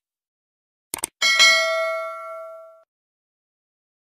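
Subscribe-animation sound effect: two quick clicks about a second in, then a notification bell ding that rings out and fades over about a second and a half.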